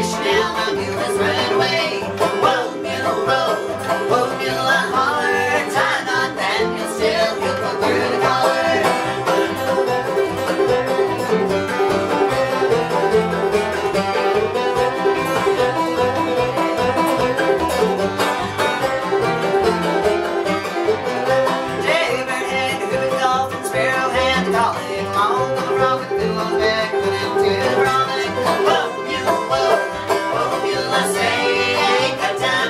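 Old-time string band playing: banjo, acoustic guitar, fiddle and upright bass together, with a steady plucked bass beat underneath.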